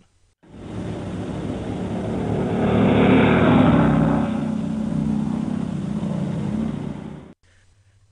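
Vehicle engines and road noise from moving vehicles on a dirt track, swelling to a peak about three seconds in, holding, then cutting off suddenly near the end.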